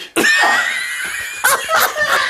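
A loud, high-pitched shriek of laughter, held for over a second, then broken into a couple of short bursts near the end.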